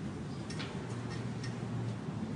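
Steady low hum and hiss with a few faint, irregularly spaced clicks.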